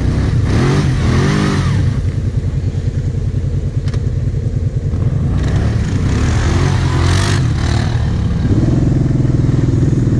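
Quad bike (ATV) engines running close by, revving up twice, about a second in and again around six to seven seconds in, with a rushing noise during each rev. Near the end the engine settles into a steadier, higher note as the quad pulls away.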